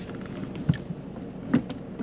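Inside a stationary car's cabin, a low steady hum of the car, with two short knocks about a second apart.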